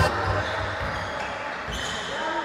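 Indoor basketball court sounds: a ball bouncing, with voices in the background and a thump near the end.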